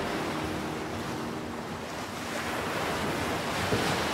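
Ocean surf breaking on rocks: a steady rushing wash of waves, with the last notes of soft background music fading out in the first half.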